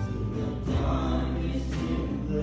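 Youth choir singing a worship song together, with electric guitar and a steady low accompaniment under the voices.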